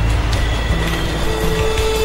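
Subway train running past the platform with a steady low rumble, under background music holding sustained notes.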